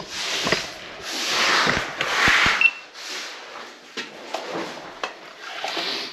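Polythene dust sheeting being handled and rustled, in a few swells of crinkling noise over the first two and a half seconds, the loudest a little after two seconds in, followed by scattered light knocks and clicks.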